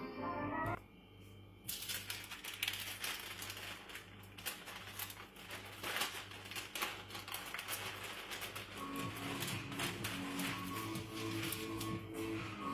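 Baking paper crinkling and rustling as hands unfold and smooth sheets on a countertop, a dense run of small crackles, over background music with a steady beat. The crinkling fades and the music's melody comes forward about nine seconds in.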